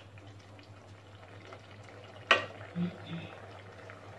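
A plastic spoon stirs and scrapes a wet, bubbling mix of grated bottle gourd, milk and sugar in a nonstick pan, over a steady low hum. A sharp knock comes about two seconds in.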